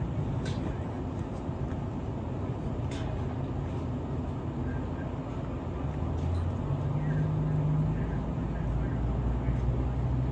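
Amtrak San Joaquin passenger train standing at the platform, idling: a steady low rumble and hum from its engine and onboard equipment. The hum gets louder and a little higher for a couple of seconds, starting about six and a half seconds in.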